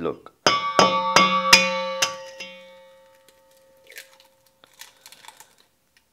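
An egg tapped several times against the rim of a stainless steel mixing bowl to crack it. Each tap makes the bowl ring with clear, bell-like tones that fade out over about two seconds, followed by a few faint small sounds as the egg goes in.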